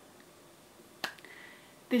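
Near-quiet room tone broken by a single sharp click about a second in, followed by a faint brief hiss.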